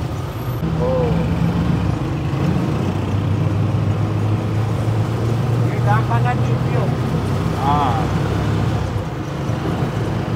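Auto-rickshaw engine running, heard from inside its open passenger cabin while riding through traffic: a steady low hum whose pitch steps down about three seconds in and then holds.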